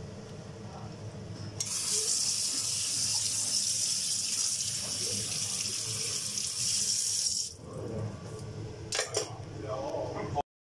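Kitchen tap running, its water splashing onto live spiny lobsters in a stainless steel sink. The flow starts about a second and a half in and is cut off after about six seconds.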